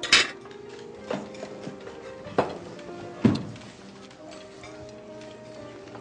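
Soft background music with four sharp clinks of cutlery against a plate in the first three and a half seconds.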